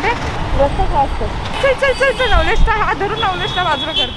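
A person talking over street traffic, with the low rumble of passing vehicles underneath. A faint steady high tone sounds through the second half.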